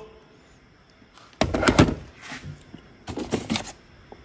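Two short bursts of knocks and clatter, about a second and a half in and again around three seconds in: objects being handled and set down on a hard surface.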